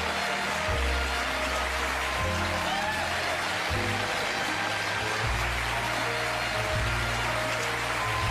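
Studio band playing an upbeat play-off number, its bass line stepping to a new note about every second and a half, over audience applause.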